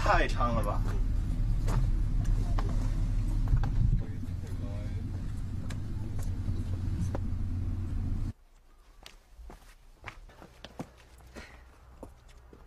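Wind buffeting the microphone, a loud steady low rumble that cuts off abruptly about eight seconds in, leaving only faint scattered clicks and taps.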